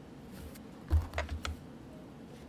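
Four quick light taps or clicks about a second in, like keys being pressed on a desk, the first the loudest.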